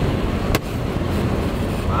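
Steady rushing road and wind noise inside a moving Volvo 240, with one sharp click about half a second in.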